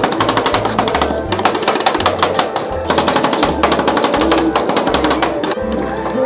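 Background music with a steady beat, over the rapid metallic clatter of two steel spatulas chopping fresh mango into rolled-ice-cream base on a steel cold plate. The chopping comes in quick runs with short pauses.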